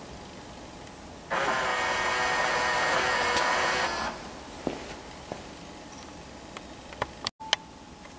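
Electric headlight levelling motor running for a little under three seconds, a steady whir that starts and stops abruptly, raising the headlight beam. A few faint clicks follow.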